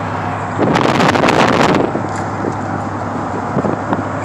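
Wind buffeting the microphone in the open bed of a moving pickup truck, over the steady hum of the truck and road. A loud rush of wind hits from just under a second in until about two seconds in, then eases back to the steady noise.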